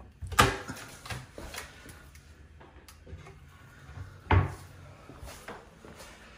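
Wooden bathroom vanity cabinet doors being shut: a sharp knock about half a second in, a few lighter clicks of the latches and hardware, then another loud knock about four seconds in.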